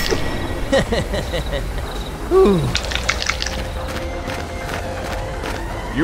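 Animation soundtrack: a voice makes short wordless exclamations, the clearest a falling one about two and a half seconds in. Under it run faint steady background tones and a few short clicks around three seconds in.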